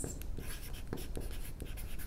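Chalk writing on a blackboard: a string of short, irregular scratches and taps as each stroke is made.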